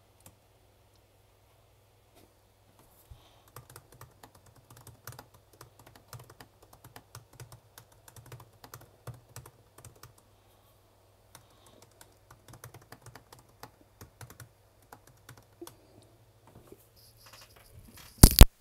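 Faint typing on a computer keyboard: irregular keystrokes in spurts, starting about three seconds in and going on until near the end, over a steady low hum.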